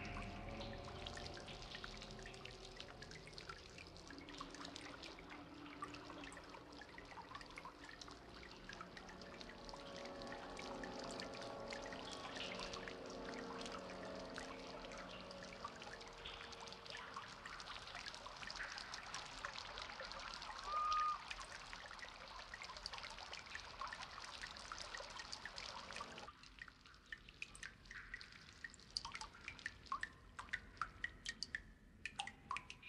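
Water trickling and dripping, faint and steady, with low wavering tones underneath for roughly the first half. A brief high tone sounds once about two-thirds of the way in. Near the end the steady trickle drops away, leaving scattered single drips.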